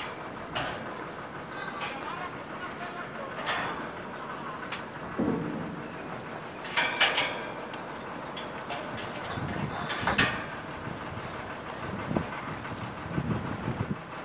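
Steady outdoor background noise with scattered sharp clicks and knocks, the loudest clusters about seven and ten seconds in, and a few faint distant voices.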